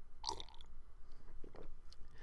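A person sipping hot coffee: a short slurp about a quarter of a second in, then a few faint mouth sounds.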